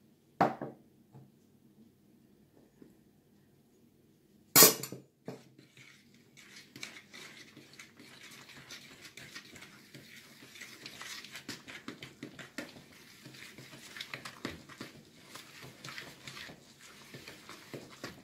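Two sharp knocks on a mixing bowl, a lighter one about half a second in and a louder one near five seconds. Then a hand mixes flour into wet mashed-banana batter in the bowl: a steady crackly rustle with small clicks that grows a little toward the end.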